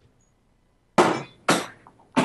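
Two sharp knocks about a second in, half a second apart, each dying away quickly: handling bumps as the microphone is jolted.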